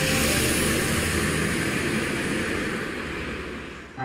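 A bus passing on the road. Its engine and tyre noise is loud at first and fades away toward the end.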